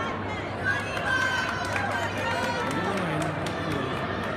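Crowd chatter and overlapping voices echoing in a large indoor track fieldhouse over a steady low hum, with one voice standing out about three seconds in.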